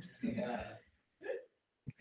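A person's voice: a brief, quiet, breathy vocal sound about a quarter second in, then a shorter faint one a little after a second.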